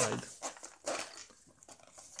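Hands handling a zippered nylon fabric tool case: soft rubbing and scratching of the fabric, with a brief louder scrape about a second in.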